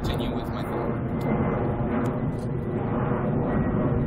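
Jet aircraft flying overhead, a steady rumble.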